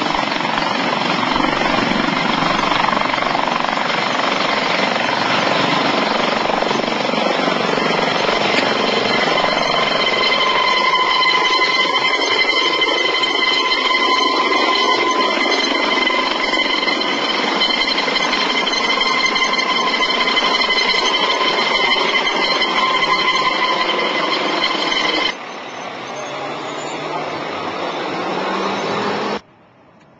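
Dauphin-type twin-turbine medevac helicopter lifting off and climbing away, a loud, steady rotor and turbine sound carrying a high whine of several steady tones. About 25 seconds in it drops abruptly in level, then builds again before cutting off suddenly near the end.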